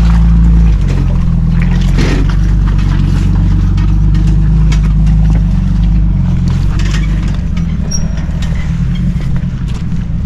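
Jeep Cherokee XJ engine running under load as it crawls over rocks, loudest at first and growing quieter from about six seconds in as it pulls away, with a few sharp knocks as the tyres climb the rocks.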